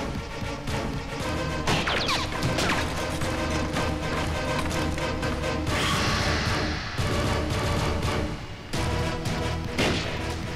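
Dramatic film background score with a steady low pulse, overlaid with fight sound effects: crashes and thuds, with a noisy crash about six seconds in.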